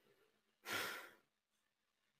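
A man's single short sigh, a breath let out close to the microphone, about half a second long and coming a little over half a second in.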